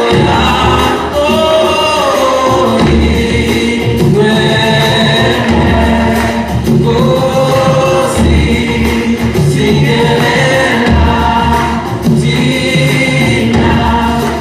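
Gospel music with a choir singing over a steady accompaniment.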